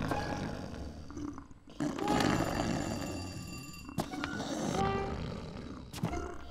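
A cartoon polar bear's growling and grumbling, loudest about two seconds in, with a sharp click about four seconds in.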